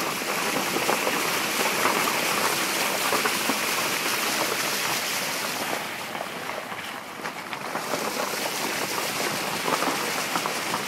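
Vehicle tyres ploughing through shallow water on a flooded dirt road: a steady rush of splashing and sloshing with scattered small patters. It eases off for a moment about seven seconds in, then picks up again.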